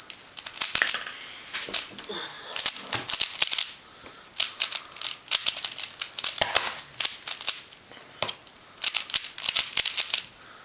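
QiYi Thunderclap v1 3x3 speedcube being turned one-handed: quick runs of plastic clicking and clacking as the layers snap round, broken by a few short pauses.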